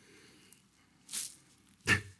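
A pause in a man's talk, mostly quiet, with a short breath into the microphone about a second in and a brief vocal sound near the end as a laugh begins.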